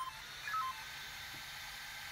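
Brushless speed controller powering up a 4370KV brushless RC motor: a quick run of beeps falling in pitch in the first second, the controller's arming tones, then the steady whir of the controller's small cooling fan, which is quite noisy.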